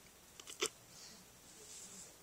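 Faint handling noise of small toy glasses being fitted onto a plush Smurf toy: two small clicks about half a second in, then soft rustling.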